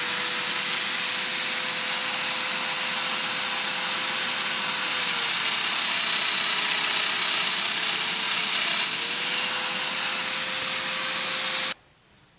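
Festool Domino joiner running at full speed, cutting a mortise in the end of a piece of wood. Its whine drops in pitch for about four seconds in the middle as the cutter takes the load, then climbs back before the motor cuts off suddenly near the end.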